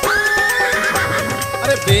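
Horse whinnying: one long call that leaps up in pitch, wavers and dies away, laid over Rajasthani folk music whose drumbeat drops out beneath it.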